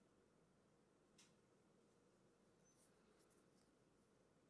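Near silence, with a faint small click about a second in and a few fainter ones near the end, from the soft rubber strap of a fitness band as its double-pin clasp is worked into the strap holes.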